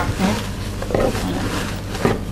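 Low, steady rumble of a motorcycle engine, at first taken for thunder.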